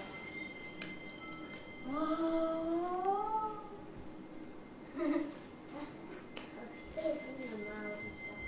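A drawn-out, voice-like pitched call that rises slowly in pitch about two seconds in, followed by two shorter calls, over a faint steady high tone.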